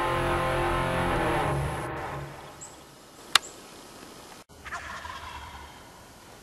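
Wild turkey tom gobbling loudly at the start, dying away over about two seconds. A single sharp click follows, and a fainter second call comes about five seconds in.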